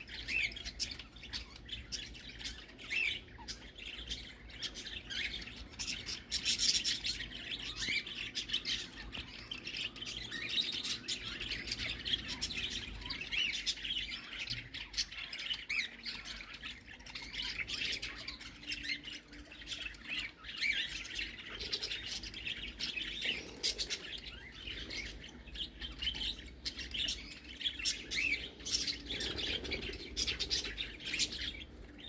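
Budgerigar chatter: a continuous run of short chirps and squawks.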